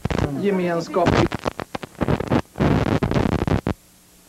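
A brief word from a man, then a rapid, irregular string of sharp cracks and bangs of gunfire that stops abruptly shortly before the end.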